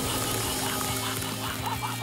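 Cartoon spray sound effect for a freezing blast, a hiss that fades out about halfway through, over background music with long held notes.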